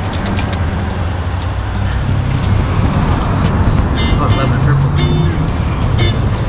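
Steady low rumble of street traffic, with the hiss of aerosol spray-paint cans being sprayed onto a wall, under a faint music bed.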